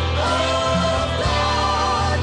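Gospel worship singing: voices holding long, wavering notes over a sustained low instrumental accompaniment that changes note every half second or so.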